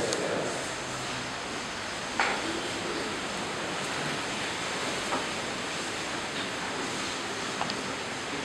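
Steady hiss of background room noise, with a few faint knocks: once about two seconds in, again about five seconds in, and near the end.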